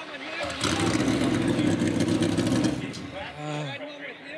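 A NASCAR Cup car's V8 engine running close by for about two seconds with a steady, pulsing note, then dying away.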